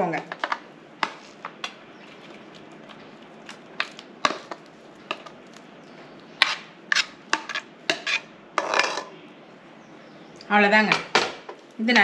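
A metal spoon clinking, knocking and scraping against metal cookware as cooked pearl millet is scraped out of a pressure cooker pot into a steel bowl. The clinks are scattered, with a longer scrape about nine seconds in.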